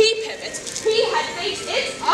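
People's voices with words that can't be made out, echoing in a large hall.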